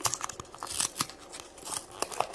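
Hands tearing and prying open a small cardboard Monster High Minis blind box: a run of sharp crackles and clicks of card and packaging, busiest in the middle.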